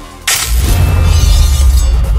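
A sudden loud shattering crash about a third of a second in, with a deep bass boom under it that carries on: a dramatic film sound effect.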